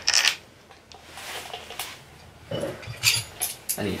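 Small metal tools and parts clinking and clicking at a dirt bike's front brake caliper as a bolt and socket are handled. There is a short rattle right at the start and a cluster of sharp clicks about three seconds in.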